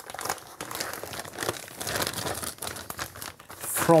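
Plastic packaging crinkling and rustling in irregular bursts as a motherboard in its clear plastic bag and a textured plastic protective sheet are handled and lifted out of a foam-lined box.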